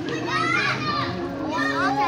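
Children's voices: two short bursts of high-pitched talking or calling, the first about half a second in and the second near the end.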